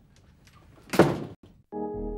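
A single loud thump about a second in. After a brief silence, sustained music chords begin near the end.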